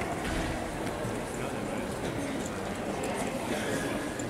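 Indistinct murmur of voices over the steady background noise of a large hall.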